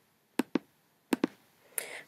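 Two pairs of short, sharp clicks about three quarters of a second apart, like a computer mouse button pressed and released twice to move on to the next slide. A short intake of breath follows near the end.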